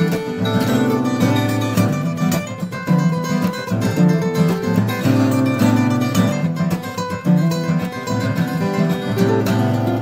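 Two acoustic guitars played together fingerstyle, an improvised duet of quick plucked notes over shifting bass notes.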